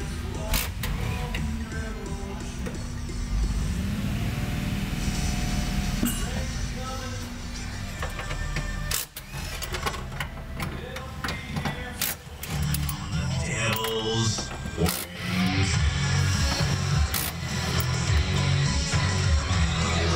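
A song with singing played through the car's factory CD stereo, heard inside the cabin, with the engine idling low underneath.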